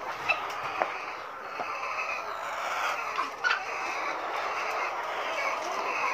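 A caged flock of young laying hens clucking and chattering steadily, with a few sharp clicks among it.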